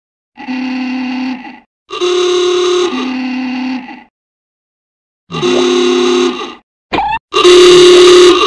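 A series of cartoon sound-effect tones: separate bursts of a steady, buzzy pitched sound with dead silence between them, standing in for the stick figures' voices. The second burst drops in pitch partway through, and a short falling blip comes just before the last and loudest burst near the end.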